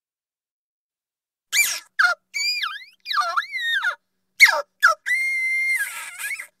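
Small cartoon creature sound effect starting about a second and a half in: a string of short, high-pitched squeaky chirps that glide down and up in pitch, ending in one longer squeal held on a steady pitch near the end.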